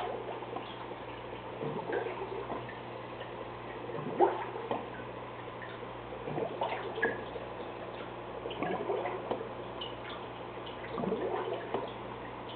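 Aquarium water dripping and gurgling in irregular small splashes every second or so, over a steady low hum.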